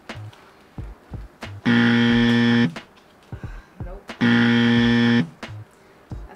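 A game-show style buzzer sounds twice. Each is a loud, steady buzz of about a second, and the second comes about two and a half seconds after the first. Faint taps are heard between them.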